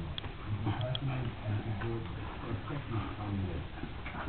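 Staffordshire bull terrier growling low in play while mouthing and tugging a knotted rope toy, with a few light clicks.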